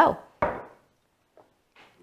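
A glass vinegar bottle set down on a stone countertop: a single knock about half a second in.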